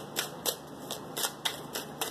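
A deck of tarot cards being shuffled by hand: a run of quick, irregular soft snaps and flicks as the cards slide and strike against each other.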